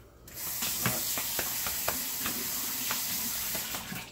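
Dry barbecue rub shaken from a shaker over a brisket: a steady gritty hiss of granules with small irregular ticks, about three or four a second. It starts just after the beginning and stops shortly before the end.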